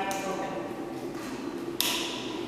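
A single sharp click near the end as a switch on the front panel of the hot water circulating blanket's pump unit is pressed, over a low, steady background sound.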